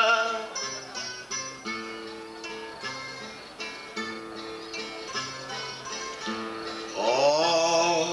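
Portuguese guitar and acoustic guitar playing a plucked instrumental passage between sung verses, quick high notes over a slower bass line. A man's singing voice ends just at the start and comes back, louder than the guitars, about a second before the end.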